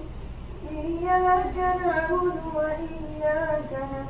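An imam reciting the Quran aloud in Arabic in the melodic, drawn-out style of prayer recitation, leading the congregation; a chanted phrase that rises and falls in pitch begins about half a second in.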